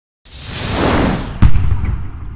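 Logo-intro sound effect: a whoosh swelling from about a quarter second in, then a single deep hit about one and a half seconds in that rings on and fades.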